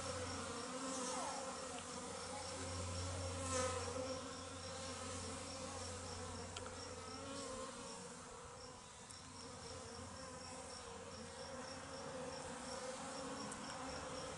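Honey bees in heavy flight around an opened top-bar hive, a steady buzzing drone that swells briefly about three seconds in. The bees are pouring out because the hive has no open entrance yet, and this is the most flying so far.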